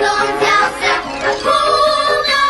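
A group of children singing a song together in Russian, with one note held steady from about one and a half seconds in.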